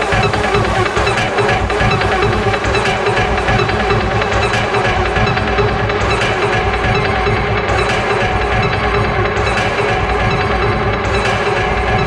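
1990s hard techno track playing in a continuous DJ mix, with a steady beat and dense layered synths.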